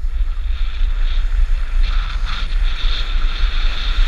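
Wind buffeting the microphone of a camera worn by a skier moving downhill, over the steady hiss of skis sliding on hard-packed snow. The hiss grows louder about halfway through.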